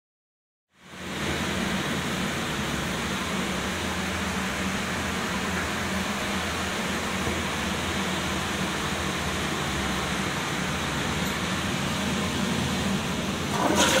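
A steady hiss with a faint low hum fills the public washroom. Near the end a flush begins: water from the low-level cistern rushes into the Armitage Shanks Magnia toilet bowl.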